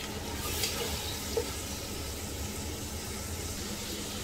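Chopped tomatoes and onions sizzling in hot oil in a pot on a high gas flame, stirred with a silicone spatula, with a few light scrapes against the pot.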